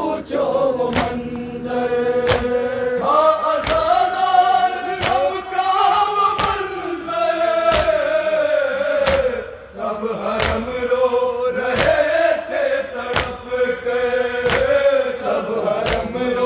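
A group of men chanting a Muharram noha (lament) in unison. Rhythmic chest-beating (matam) slaps keep time at about three beats every two seconds. The chanting dips briefly a little before the tenth second.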